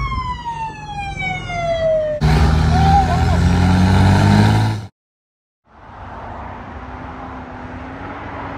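A police siren falls steadily in pitch. About two seconds in it cuts to a loud vehicle engine running with road noise. After a brief dropout to silence about five seconds in, a quieter, steady motorhome engine and tyre noise follows as the motorhome approaches.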